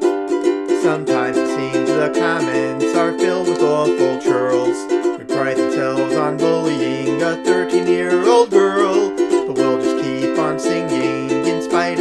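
Ukulele strummed in a song, with a voice singing a melody over it from about a second in.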